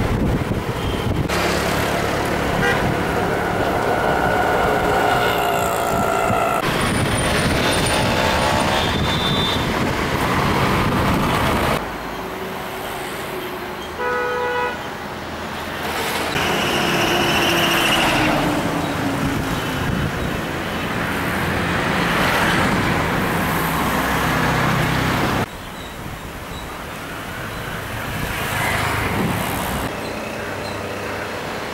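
City road traffic: motor scooters and cars running past with several horn toots, one clear horn blast about halfway through. The sound changes abruptly several times.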